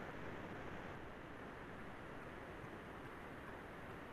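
Faint, steady hiss of room tone, with no distinct sound.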